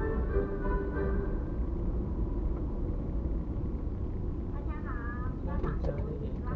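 Steady low road and engine rumble inside a moving car's cabin. Music from the car's audio fades out in the first second or so, and a brief voice is heard near the end.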